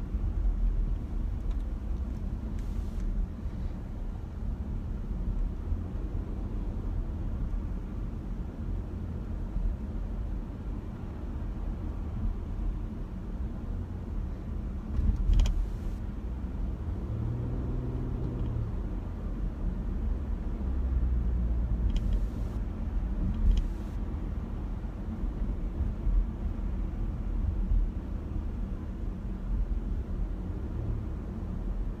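Steady low rumble of road and engine noise inside a moving car's cabin, with a few brief knocks about halfway through and again later.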